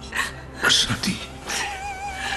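A man's choked, tearful voice with breathy, gasping sobs, saying a word in a strained way, over soft sustained background music.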